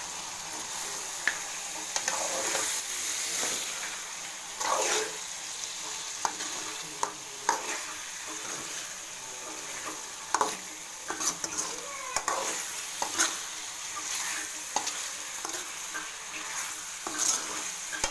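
Mutton pieces and eggs sizzling in a metal kadai while a steel spatula stirs them, scraping and clinking against the pan at irregular moments over a steady frying hiss.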